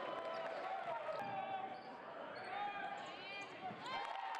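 Basketball game sounds on a gym court: sneakers squeaking on the hardwood, a ball bouncing, and voices calling out.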